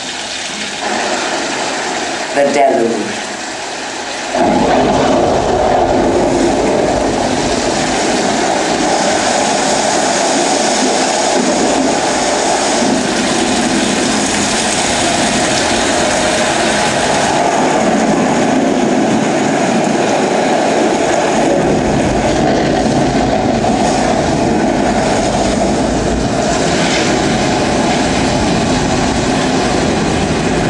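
A film soundtrack's rushing-water effect for torrential rain and flooding waterfalls, played through theater speakers. After a couple of short pitched sounds, a steady dense wash of water comes in about four seconds in, and a deep rumble joins it about two-thirds of the way through.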